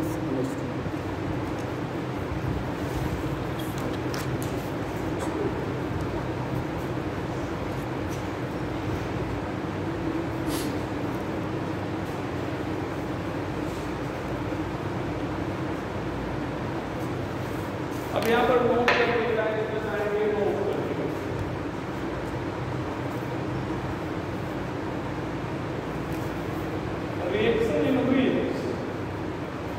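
Steady hum of a room fan. A voice speaks briefly about two-thirds of the way through and again at the very end.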